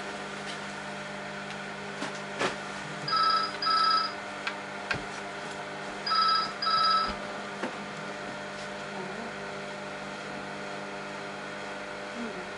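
A telephone ringing with a double-ring cadence: two pairs of short rings about three seconds apart, over a steady low hum.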